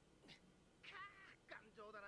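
Faint cat meows: a few short calls, each falling in pitch.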